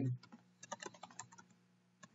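Typing on a computer keyboard: a short run of faint, quick key clicks.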